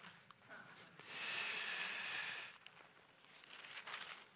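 Thin Bible pages rustling as they are leafed through: one noisy swish starting about a second in and lasting about a second and a half.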